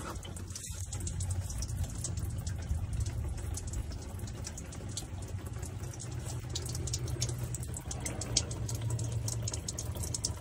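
Diesel fuel dripping and trickling from the loosened underbody fuel filter housing into a plastic drain pan, a steady patter of drops over a low hum. The fuel is draining out as the filter's pressure is released.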